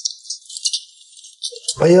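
Fingers prying and scraping scales off a large raw fish by hand, a scratchy crackle of small irregular clicks.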